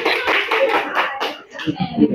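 A few people clapping their hands in quick succession. The claps die away about a second and a half in.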